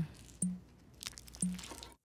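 Faint horror-film sound effects of a drill being driven into a skull, with two short clicks about a second apart.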